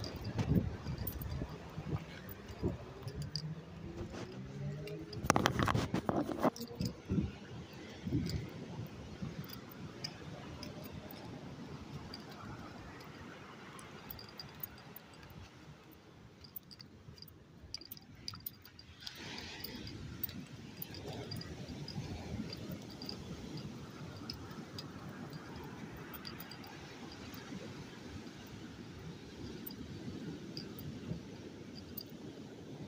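Handling and walking noise from a phone carried along a path and boardwalk, with a burst of loud knocks and rustles about five seconds in. From about twenty seconds in, a steady rushing noise of surf on the open beach.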